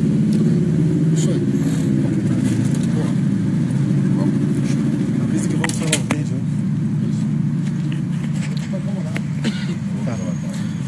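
Indistinct voices of a crowd of reporters over a steady low background hum, with scattered clicks and knocks from handheld microphones being moved as the huddle breaks up.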